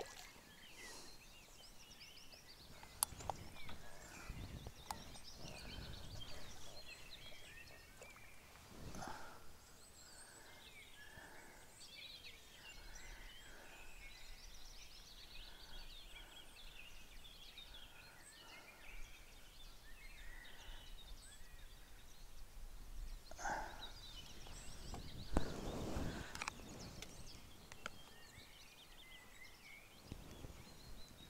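Faint outdoor ambience of small birds singing in the bankside trees, with gusts of wind on the microphone rising a few seconds in and again near the end, and an occasional small click.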